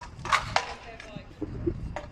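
Stunt scooter's wheels rolling over concrete paving tiles, with two sharp clacks in the first second followed by rough, knocking rolling noise.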